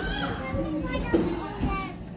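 Children's voices chattering and calling out over a steady low hum, with one sharp thump a little past a second in.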